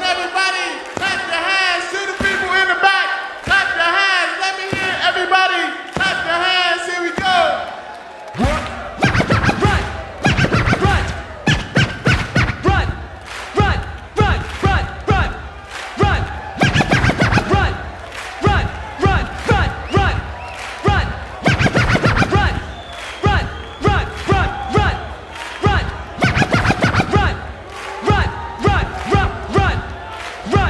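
Live hip-hop show: a voice chants rhythmically over the PA for the first seven seconds or so. Then a heavy beat starts with turntable scratching.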